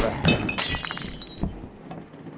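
A glass bottle smashing: a sharp crash, then shards tinkling for about half a second, with a couple of dull knocks after.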